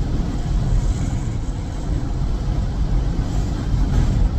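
Steady road and engine noise inside a moving car's cabin: an even, low rumble with no distinct events.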